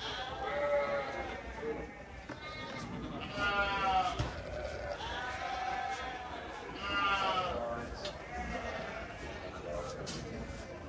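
Penned sheep bleating: several long, quavering bleats, one after another.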